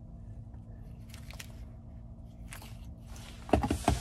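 Handling noise in a truck cabin over a low steady hum: a few faint clicks and rustles, then a cluster of louder knocks and thumps near the end.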